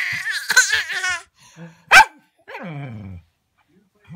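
A baby's high-pitched, wavering squealing laugh for about the first second. A single short, loud yelp comes about two seconds in, then a lower voice sliding down in pitch.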